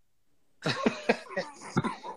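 About half a second of silence, then a person coughing and clearing the throat in several short, fairly quiet bursts over a video-call microphone.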